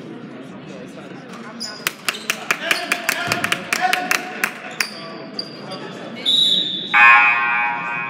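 Gym crowd murmur with a quick run of sharp claps or knocks, a brief high whistle, then the scoreboard horn sounding for about a second near the end, signalling a substitution.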